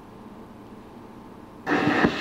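Surface noise from a shellac 78 rpm record turning in its lead-in groove: a steady, faint hiss. Near the end the recording starts with a sudden loud entry.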